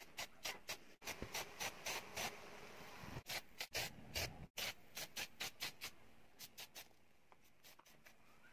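Aerosol spray paint can sprayed in many short bursts, several a second, growing fainter near the end.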